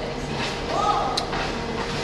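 Fast-food restaurant background noise: a steady low hum under general room noise, with a short faint voice a little before the middle and a sharp click about a second in.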